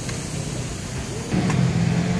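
Street traffic: a motor vehicle's engine running steadily, getting louder a little over a second in.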